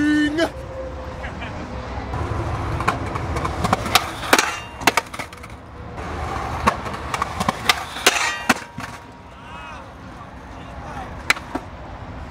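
Skateboard wheels rolling on concrete, with a series of sharp wooden clacks from the board popping and hitting the ground.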